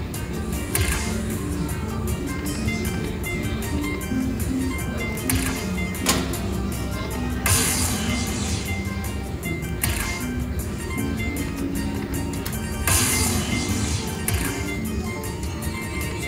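Aristocrat Dragon Cash slot machine playing its bonus-feature music during free spins: a run of short electronic notes and chimes, with a few brief brighter bursts as the reels spin.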